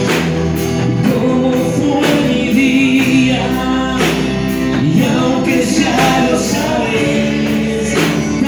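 Live Christian worship band playing a song with singing: electric guitars, bass and drums under several voices, with a steady beat.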